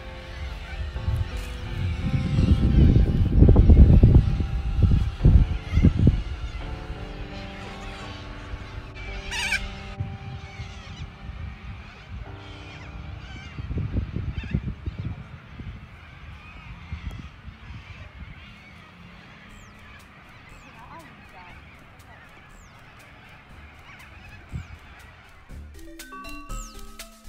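Waterbirds honking and calling, with a sharper high call about ten seconds in and small chirps later. Loud low rumbling bursts come about two to six seconds in and again around fourteen seconds.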